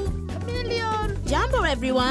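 Background music with a steady bass, under high, wordless voice sounds that glide up and down in pitch.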